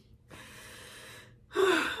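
A woman's audible breath, an even, pitchless rush lasting about a second, followed near the end by the start of her speech.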